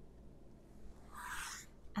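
Quiet room tone, broken about a second in by one short, soft hiss lasting about half a second.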